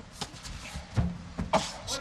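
A few sharp thuds of gloved punches landing on a raised guard, with short shouts from ringside between them.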